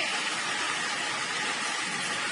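Steady hiss of room noise picked up by the recording's microphone, with no other distinct sound.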